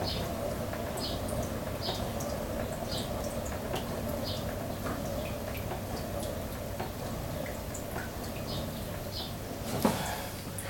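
Electric potter's wheel turning steadily with a low motor hum while a needle tool cuts into the spinning groggy clay. Short, high ticks recur about every half second, and there is one louder click near the end.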